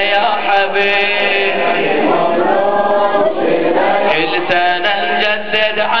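A crowd of men chanting a Shia latmiyya mourning refrain together in unison. From about two-thirds of the way in, a steady beat of sharp slaps runs under the chant, typical of the mourners' chest-beating (latm).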